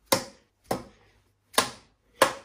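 A run of sharp knocks, evenly spaced about two-thirds of a second apart, three of them, each dying away quickly.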